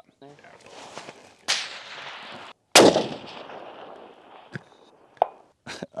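A single 6.5 PRC rifle shot about three seconds in: a sharp, very loud crack followed by a long fading echo. A quieter sharp report comes about a second and a half earlier.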